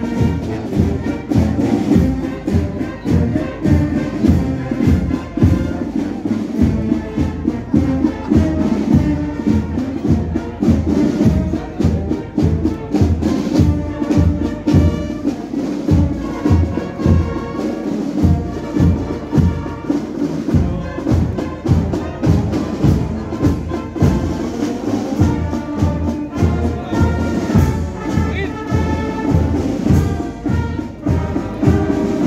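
Brass band playing a march, with held brass notes over a steady drum beat.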